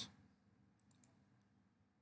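Near silence, with a couple of faint computer-mouse clicks a little under a second in.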